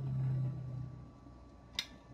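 A low steady hum during the first second, then one short sharp click near the end as the ATmega328P chip is pressed into its DIP socket on the circuit board.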